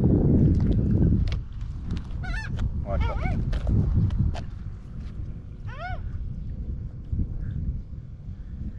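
Wind rumbling on the microphone, loudest in the first second. A few short honking calls from a bird: a quick run of them a few seconds in, and one more about six seconds in.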